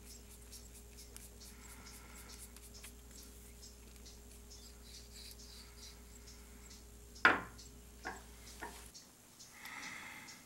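Quiet hand handling of a corkscrew's metal and wooden parts over a metal table: faint rubbing and light ticking as a small knob is turned onto the shaft, over a low steady hum. About seven seconds in comes one sharp click, then two lighter clicks.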